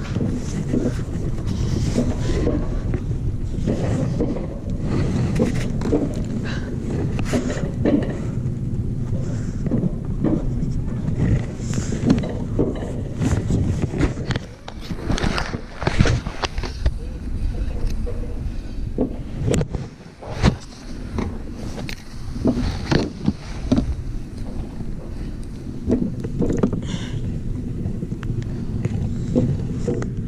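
Alpine coaster sled running down its steel rail track: a steady rumble from the wheels with frequent clicks and knocks, and wind on the microphone.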